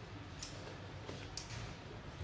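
Two light clicks about a second apart as a refrigerator circuit board is handled and lifted from a workbench, over a faint steady low hum.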